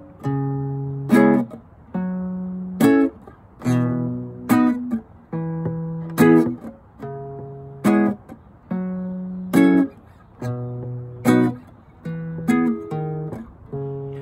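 Acoustic guitar playing the four-chord progression of D-flat minor seven, F-sharp minor seven, B and E. Each chord starts with a deep root note plucked alone, followed by a sharp strum of the full chord. The pair repeats in an even rhythm, about every two seconds.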